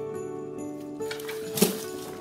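Background music with a steady tune; about a second in, a rustle of branches builds to a short, loud crash about one and a half seconds in as an artificial Christmas tree falls over.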